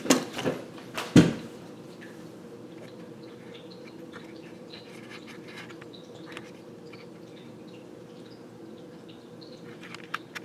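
A few sharp knocks in the first second or so as a small plastic RC truck and its transmitter are set down on a table. Then a steady low room hum with faint scattered ticks.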